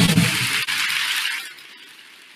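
The closing sting of the TED talk intro: the pitched music stops right at the start and a bright, noisy wash without clear notes rings on, fading out over about a second and a half.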